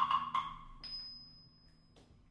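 A few marimba notes struck at the start, ringing out and fading, then a thin high tone held quietly as the music drops to a pause.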